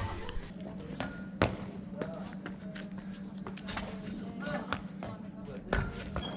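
Sharp knocks of feet on pavement during parkour practice, the loudest a thump of a landing just before the end, over a steady low hum.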